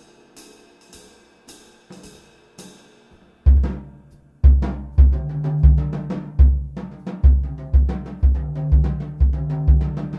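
Jazz drum kit solo phrase. For the first three seconds or so there are quiet strokes with a ringing shimmer. About three and a half seconds in, loud drum strokes with deep bass drum hits take over, roughly two a second.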